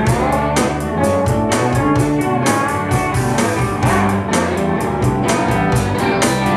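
Live rock band playing an instrumental passage between sung lines: electric guitars and bass guitar over a drum kit keeping a steady beat.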